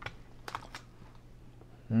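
Hard plastic card holders clicking as they are handled and set down on the desk: three short sharp clicks, one at the start and two more about half a second in, a quarter second apart.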